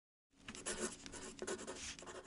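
Pen scratching across paper in quick strokes, a handwriting sound effect. It starts a moment in and cuts off abruptly.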